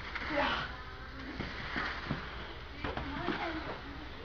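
Heavy battle ropes slapping the carpeted floor in a few irregular thuds, over faint voices in the background.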